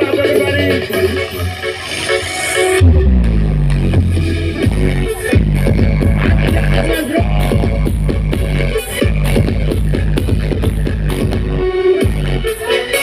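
Loud electronic dance music played through a large outdoor 'horeg' sound system (Brewog Audio) and recorded by a phone in the crowd. A build-up cuts off about three seconds in and drops into a heavy, pulsing bass line.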